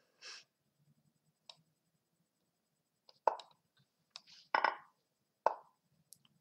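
Lichess move sound effects: short wooden clacks of chess pieces landing, several in quick succession in the second half of a fast bullet game, with fainter clicks between them.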